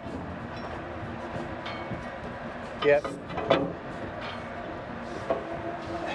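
Steady wind noise on the microphone from a strong wind blowing across the boat, with a faint steady hum underneath.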